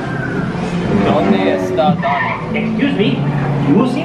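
Cartoon character voices from a theme-park dark ride's soundtrack, talking over a steady low hum.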